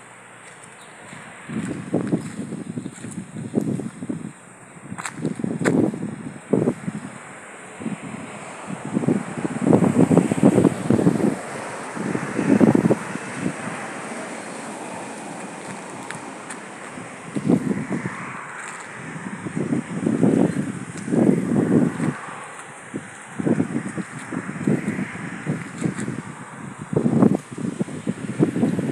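Wind buffeting the microphone in irregular gusts, swelling and dropping every second or two.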